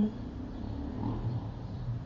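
A low, steady hum that wavers slightly in level.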